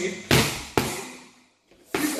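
Boxing gloves striking focus mitts during a pad drill: two sharp smacks about half a second apart, then a third just before the end.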